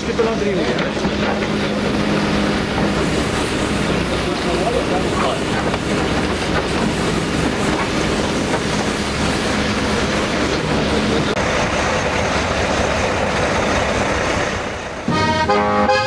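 Fermec backhoe loader's diesel engine running steadily under load while its bucket digs into frozen soil. About a second before the end, a button accordion tune cuts in abruptly.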